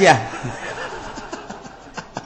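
A man's drawn-out, sung vocal note breaks off just at the start, trailing into soft, quiet chuckling; the rest is faint.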